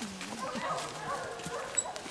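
Hunting hounds baying on a wild boar's trail, with drawn-out calls that rise and fall in pitch. A brief high chirp comes near the end.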